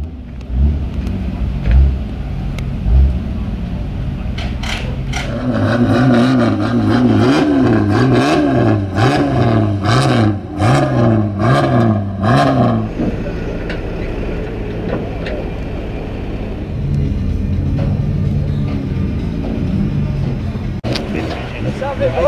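A stripped-out Ford Granada banger's engine revved hard again and again, its pitch swinging up and down for several seconds, with a run of sharp cracks among the revs; then it settles to a lower, steadier running sound.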